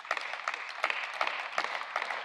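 Parliament members applauding: many hands clapping at once in a steady, even spread of claps.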